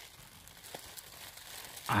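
Faint rustling and crinkling of dry beech leaf litter as a hand works around the base of a porcino mushroom, with one small click about three quarters of a second in. A short voiced "ah" comes in right at the end.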